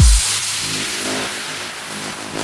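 Trance DJ mix dropping into a breakdown: the steady kick drum stops just after the start, leaving a hissing white-noise sweep that slowly fades over soft sustained synth pads.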